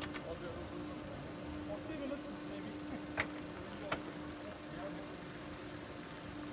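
Sharp clicks of cockpit switches in a small helicopter, three times, with the two loudest near the middle, over a steady hum with short breaks in it.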